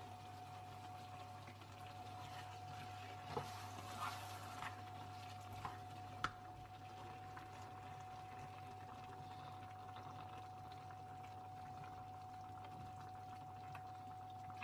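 Cream pouring into a hot frying pan of chicken and mushrooms and bubbling faintly as it is stirred, with a few sharp clicks of a plastic spatula against the pan between about three and six seconds in. A steady low hum and a steady high tone run underneath.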